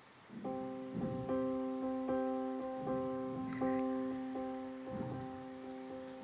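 Soft background piano music, with gentle repeated chords starting about half a second in.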